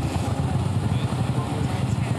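A vintage cyclecar's engine running, a steady, rapid low-pitched beat.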